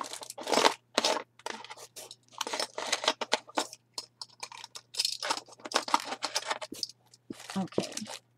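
Paper packaging rustling and crinkling in irregular bursts as hands rummage through a kit box to fish out loose binder clips, over a steady low hum.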